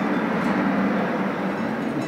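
Electric fans blowing on hanging plastic sheeting: a steady rush of air.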